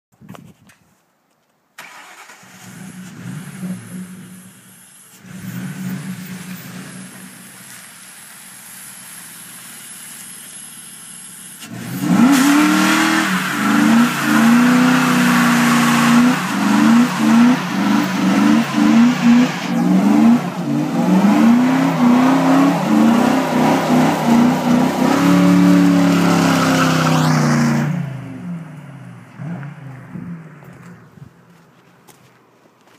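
A 1997 Ford Mustang GT's 4.6-litre V8 with a dual Mac exhaust rumbles at low revs with a couple of short swells. About twelve seconds in it goes into a burnout: the engine is held high with the revs bouncing up and down while the rear tyres spin on the asphalt with a loud hiss of tyre noise. After about sixteen seconds the revs drop and the sound dies away.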